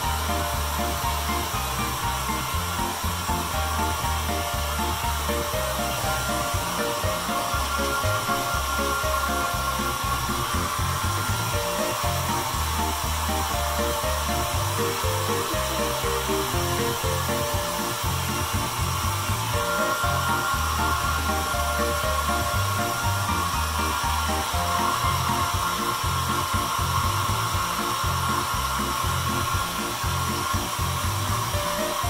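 Handheld hair dryer running steadily, with background music playing over it.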